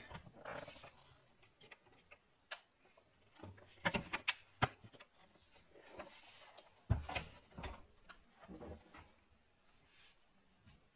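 Handling noise from a white plastic MacBook laptop: scattered light clicks and knocks with a few brief rubs as it is turned over, set down on the table and its lid opened.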